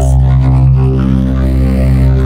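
A cartoon soundtrack run through an electronic voice-distortion effect, turned into a loud, steady, droning buzz with a dense stack of sustained pitches, heaviest in the low end, with no recognisable words.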